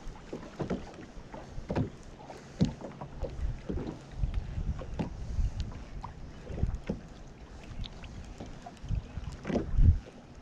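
Choppy lake water slapping against an aluminum boat hull in irregular knocks and splashes, with wind buffeting the microphone. The loudest thump comes just before the end.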